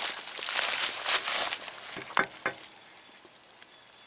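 Dry leaves and grass rustling and crackling underfoot, loudest in the first second and a half, with a few sharp clicks about two seconds in before it settles.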